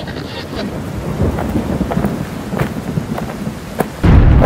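A storm-like noise: a low rumble under a steady hiss with scattered crackles and ticks, like rain and thunder, growing slightly louder.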